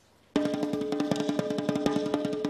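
Fast snare drumming on a harness-mounted marching snare starts abruptly about a third of a second in: a dense run of rapid stick strokes with a sustained pitched ring beneath them.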